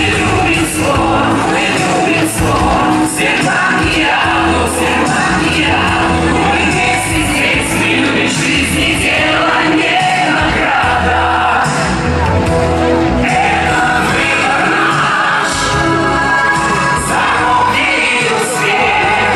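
A man and two women singing a pop song live into handheld microphones over an amplified backing track with a steady bass beat.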